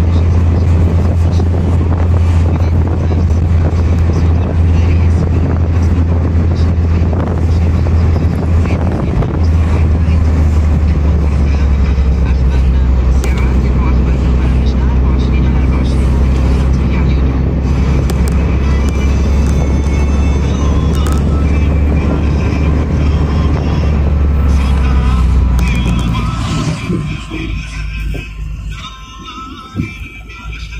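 Moving car heard from inside the cabin: a loud, steady low road-and-engine rumble, with music and voices faintly underneath. The rumble falls away about four seconds before the end.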